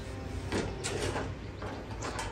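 Soft handling noises on a workbench: a few light knocks and sliding scrapes as things are moved, over a steady low hum.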